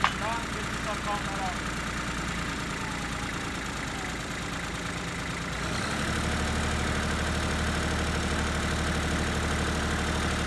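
Compact tractor's diesel engine running a PTO post-hole auger, the engine speeding up and getting louder about six seconds in as the auger is driven into the ground. A single sharp knock comes right at the start.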